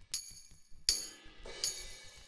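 Sampled tambourine from the Reason Drum Kits rack extension, struck three times at an even pace about three quarters of a second apart. Each hit is bright and jingly with a short tail. It is playing through the tambourine's transient shaper while the sustain is being adjusted.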